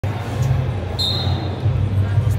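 Gymnasium noise during a wrestling bout: a steady low rumble with some voices, and one short high-pitched tone about a second in.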